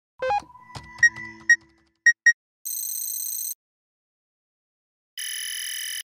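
Electronic intro sting for an animated logo: a quick run of short pitched notes and blips, then two separate stretches of high, bright ringing tones, like a ringtone chime, with silence between them.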